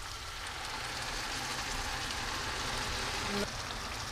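Ground beef sizzling steadily in a frying pan as diluted tomato paste is poured in, a soft, even hiss like rain.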